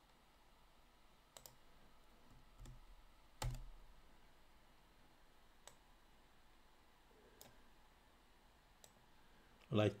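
A few scattered computer-mouse clicks over faint room hiss, about six in all, the loudest about three and a half seconds in with a soft thud.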